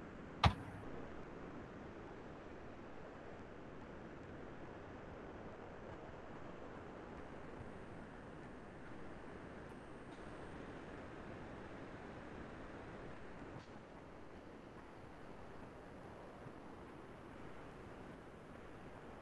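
Faint steady hiss of background noise, with one sharp click about half a second in.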